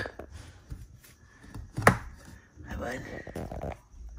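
One sharp click about two seconds in, among faint scattered ticks and rustles, between softly spoken words.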